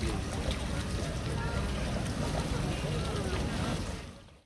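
Outdoor ambience in a flooded street: a steady rumble of wind on the microphone, with distant voices faintly heard underneath.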